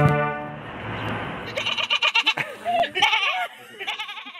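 A wind band's final held chord, with brass and reeds, cuts off right at the start and rings away. From about a second and a half in, high voices call out in short bursts that rise and fall in pitch.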